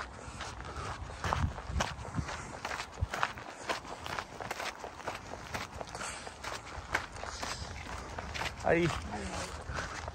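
Footsteps on a gravel path at a steady walking pace.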